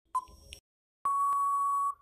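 Quiz countdown-timer sound effect. A short beep comes as the count reaches its last second, and about a second later a long, steady beep of nearly a second signals that time is up.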